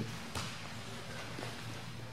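Quiet grappling on a mat: gi cloth rustling and a few soft knocks of knees and hands on the mat.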